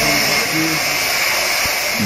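Electric power tool running steadily with a high, even whine, from restoration work on a building.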